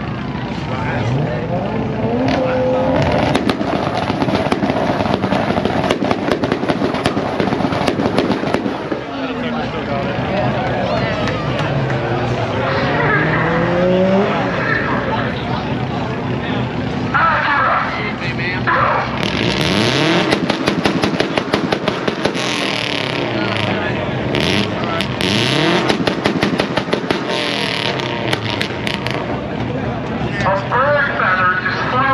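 Race car engines revving repeatedly in the staging lanes of a drag strip, the pitch climbing and dropping again and again, with dense rapid crackling through the second half.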